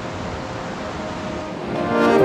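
Mountain river rushing steadily over rocks and small cascades. Music fades in near the end.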